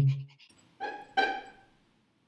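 A voice trails off, then two short high-pitched whimpers about a second in, in quick succession.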